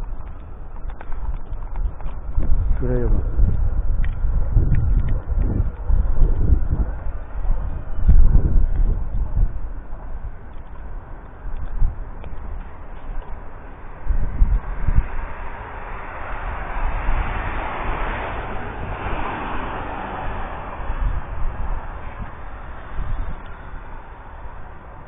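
Outdoor ambience in heavy falling snow, with gusty wind rumbling on the microphone. Partway through, a broad hiss swells up for several seconds and fades away.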